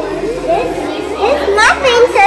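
Young children's voices chattering and exclaiming, rising to a few high-pitched excited squeals near the end.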